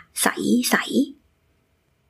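A woman's voice saying a short Thai phrase, 'sai sai' (clear, clear), in the first second.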